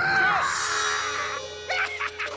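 Cartoon soundtrack: a short voice that rises and falls, then a hissing swish over steady background music, with a sharp hit near the end.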